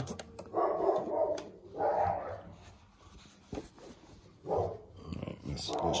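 A dog barking in several short bouts, spaced a second or two apart.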